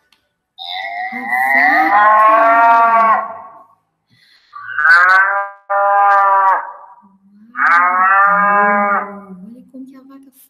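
Recorded domestic cow mooing: four long, low calls, the first the longest.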